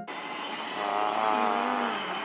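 Steady background din of a busy restaurant dining room. About a second in, a brief wavering pitched sound rises out of it and slowly falls away.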